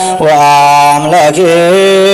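A man's voice singing Ethiopian Orthodox liturgical chant (zema), in long held notes broken by wavering, ornamented turns.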